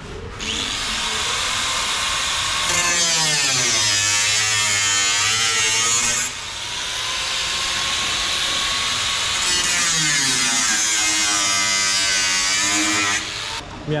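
Angle grinder grinding into the metal of a Ford Mustang's rear wheel arch. Its whine sags in pitch and recovers twice as the disc bites, with a brief break in the middle, and it stops about a second before the end.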